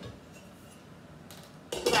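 Quiet kitchen room tone, then near the end a stainless-steel lid set down on a large stockpot with a brief metallic clatter.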